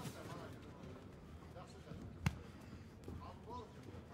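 Quiet ring-side sound of an amateur boxing bout: faint voices in the hall and one sharp thud of a gloved punch landing about two seconds in.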